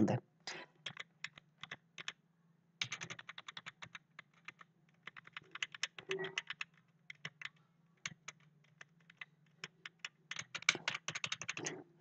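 Faint, irregular clicking of computer keys, in quick clusters with short gaps, over a low steady hum.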